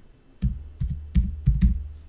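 Typing on a computer keyboard: a quick run of keystrokes with dull thuds, beginning about half a second in.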